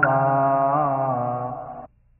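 Buddhist chanting in long, slowly held notes, with a small bend in pitch nearly a second in, fading out and stopping shortly before the end.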